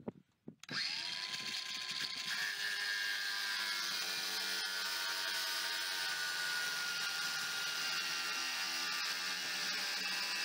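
DeWalt 18 V cordless angle grinder switched on under a second in after a few light clicks, its whine rising as the disc spins up, then cutting steadily into the corrugated steel roof of a shipping container with a continuous grinding whine.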